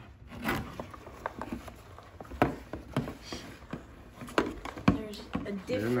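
Hard plastic Mizuno Samurai youth catcher's shin guard being handled, with scattered sharp clicks and knocks from its shell and strap clips, the loudest near the middle and toward the end.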